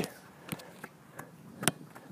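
Faint, short knocks of a football being kicked during passing play, four in under two seconds, the clearest near the end.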